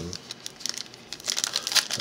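Foil wrapper of a Donruss football card pack crinkling as it is torn open by hand, a run of sharp crackles that grows busier in the second half.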